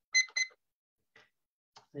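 Two short electronic beeps of the same pitch, about a quarter second apart, typical of a computer notification chime on a video call, followed by a couple of faint clicks.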